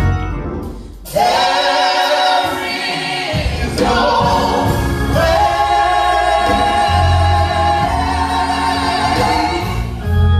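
A small gospel vocal group singing long held notes in harmony, over organ accompaniment. The voices come in about a second in after a short dip, and swell again on a sustained chord in the second half.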